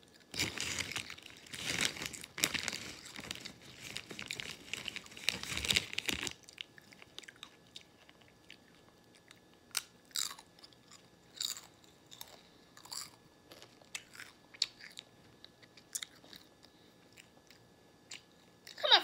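Close-up chewing of crunchy chips: a dense run of crunching for about six seconds, then single crunches every second or two.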